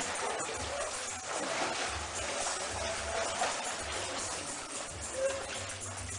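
Water splashing in a swimming pool as swimmers kick and paddle on pool noodles, over background music with a low bass pulse and faint voices.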